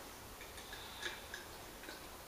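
A handful of faint, short clicks at uneven intervals, the loudest about a second in, over a quiet room.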